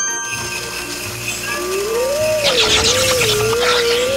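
Cartoon sound effects for a magic milkshake machine going wrong, over background music: a single wavering, whistle-like tone slides up and down from about a third of the way in, joined about halfway through by a dense fizzing crackle.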